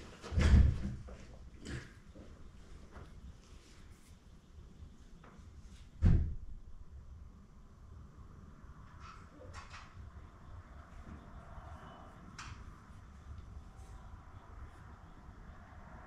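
A door banging shut with a dull thump about half a second in, then a second thump about six seconds in, with faint knocks and rattles between.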